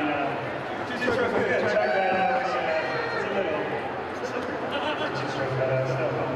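A man speaking into an interview microphone, over a steady low background hum.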